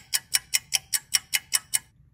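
Countdown-timer sound effect: evenly spaced clock-like ticks, about five a second, stopping shortly before the end.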